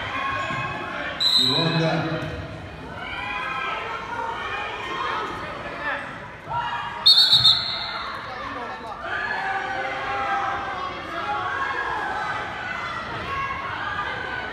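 Many voices talking and calling in an echoing gym. A referee's whistle gives one short, high blast about a second in, then three quick loud blasts around seven seconds in.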